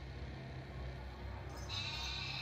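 A young goat bleating in a film soundtrack, over a low steady rumble.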